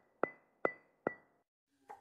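Short title-card sound effect: a run of evenly spaced sharp clicks, a little over two a second, each followed by a brief high ringing tone, stopping about three quarters of the way through.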